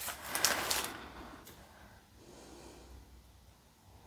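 A short breathy rush of air in the first second, like a sharp exhale or snort through the nose, then only faint room noise with a low hum.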